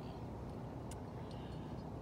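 Steady low outdoor rumble, with one faint tick about a second in.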